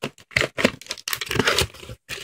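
Scissors snipping through thin clear plastic packaging, a quick irregular series of sharp snips and crackles of the crinkling plastic.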